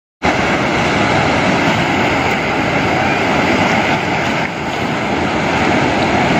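Water rushing through the open spillway gates of a dam and churning in the river below: a loud, steady rush.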